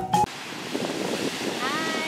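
Beach surf and wind rushing steadily on the microphone, after a music track cuts off just after the start. Near the end a short rising call sounds over it.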